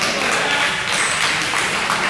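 Spectator crowd noise echoing in a gymnasium: a steady mix of scattered clapping and indistinct calling out.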